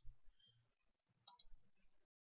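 A few faint computer mouse clicks against near silence, with a short cluster of clicks about a second and a half in.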